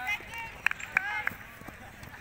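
Running footsteps on a grass field: a few quick footfalls about a third of a second apart as a sprinter passes close by, with faint voices.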